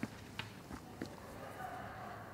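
Faint footsteps on a stage floor: a few soft, irregular taps over quiet room tone.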